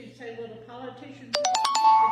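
Electronic ringtone: a quick rising run of bright chime-like notes that starts suddenly about two-thirds of the way in and is the loudest sound present.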